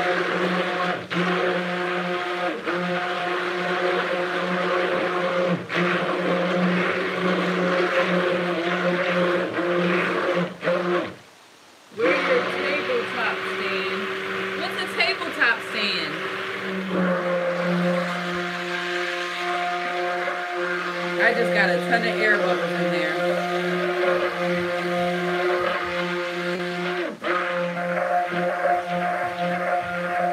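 Cuisinart stick blender running steadily in a stainless steel pot of raw soap batter, mixing the oils and lye solution toward trace. It cuts out for about a second partway through, then starts again.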